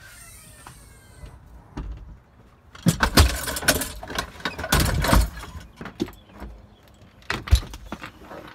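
Lawn-mowing gear being handled and shifted in a vehicle's cargo area under the open liftgate: two spells of clattering and knocking about three and five seconds in, and a few sharp clicks near the end.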